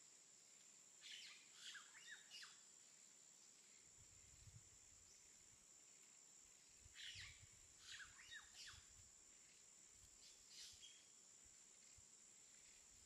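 Faint bird chirping: small clusters of short chirps about a second in, again around seven to nine seconds, and once more near the end, over quiet room tone with a thin steady high-pitched whine.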